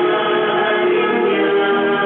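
A group of voices singing together in long held notes, the congregational singing of a prayer meeting.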